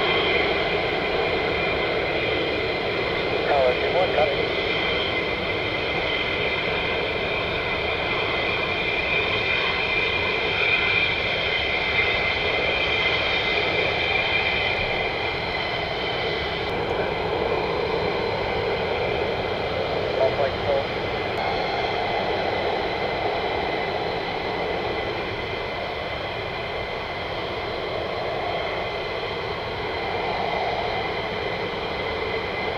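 F-15 jet engines running on the ground, a steady jet noise with a constant high-pitched turbine whine.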